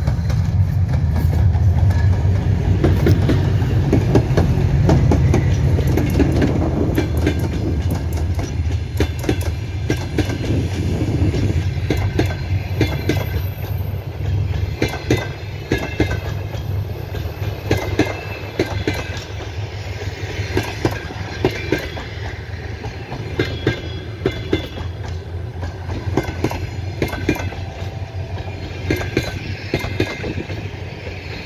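A 2TE10UT twin-section diesel locomotive's engines rumble heavily as it passes. Its passenger coaches then roll by with a steady clickety-clack of wheels over the rail joints, which slowly fades as the train draws away.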